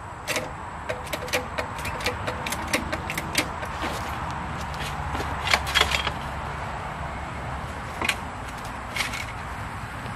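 Sharp metal clicks and knocks from a small floor jack and steel jack stands being worked and set. The clicks come quickly for the first few seconds, bunch together about five and a half seconds in, then thin to a couple of single clicks near the end.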